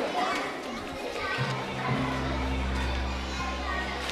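Many children chattering and playing in the background. A low, sustained music bed comes in about halfway through.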